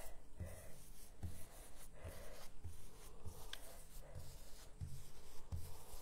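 Stencil brush dabbing and scrubbing chalk paint through a stencil onto paper: a faint, soft brushing with dull low knocks about once a second as the brush presses down.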